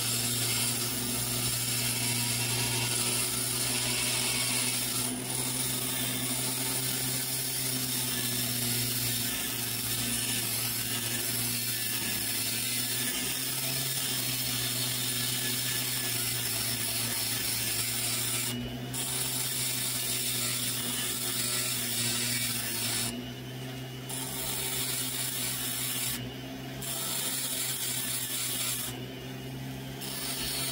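Rotary carving tool with a cylindrical diamond burr grinding wet fire agate: a steady motor hum under a high, gritty grinding hiss. The grinding drops away briefly a few times near the end.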